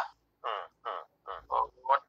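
A voice coming through a video call in short broken fragments, about six brief clipped sounds separated by dead-silent gaps.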